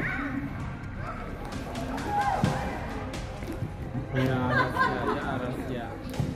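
Voices calling and chattering across a large indoor sports hall, with music playing along.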